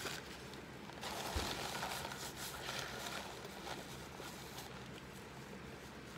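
A paper towel crinkling and rustling as it is picked up and pressed to the mouth, from about a second in to nearly five seconds, with a soft knock about a second and a half in.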